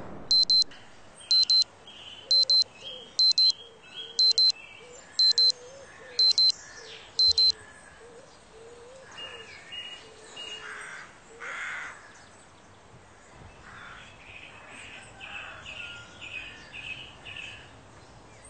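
An electronic alarm beeping in quick high pairs, about one pair a second, stopping about seven and a half seconds in. Birds chirp underneath, and carry on alone after the alarm stops.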